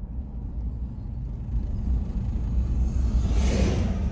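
Steady low road rumble of a car being driven, heard from inside the cabin, with an oncoming vehicle swelling into a whoosh as it passes about three and a half seconds in.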